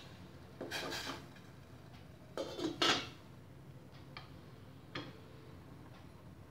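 Stainless steel pot and lid clinking: two short bursts of metal-on-metal clatter, the second louder, as the lid is set on the pot, followed by a few light ticks.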